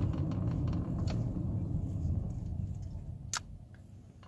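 Low, steady car rumble of engine and road noise heard inside the cabin, fading away near the end, with a single sharp click about three seconds in.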